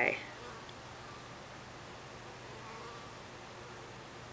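Faint honeybee buzzing: a thin hum that comes and goes over a steady low hiss. The tail of a spoken word sits at the very start.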